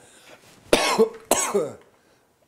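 A man coughing: a run of three hard coughs starting about three-quarters of a second in.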